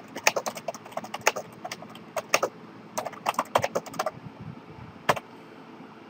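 Typing on a computer keyboard: quick, irregular keystrokes in short runs, thinning out after about four seconds, with one last click about five seconds in.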